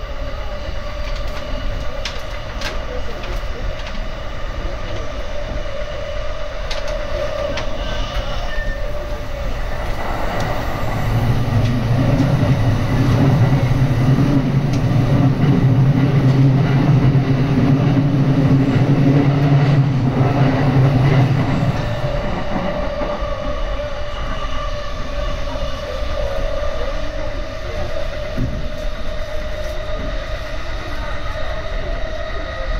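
Electric commuter train running at speed, heard from inside the carriage: a steady rumble of wheels on rail with a humming whine and a few sharp clicks early on. A louder low drone swells about ten seconds in and drops away around twenty-two seconds.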